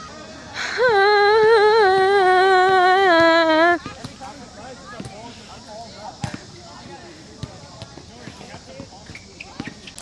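A young person's voice holding one long, wavering sung note for about three seconds, dropping a little in pitch at the end. Then a quieter outdoor background with faint chatter and a few scattered knocks.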